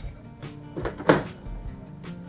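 Background music playing, with a few short cuts of scissors through plastic vacuum-sealer bag film, the loudest about a second in.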